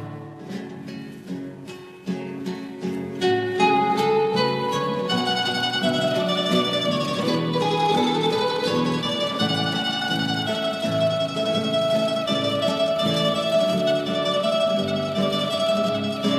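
Instrumental Riojan folk music on plucked acoustic guitars. It starts sparse and quiet with single plucked notes and fills out into a fuller, steady passage about four seconds in.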